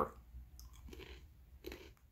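A person chewing a crunchy sesame simit cracker, with a few faint crunches.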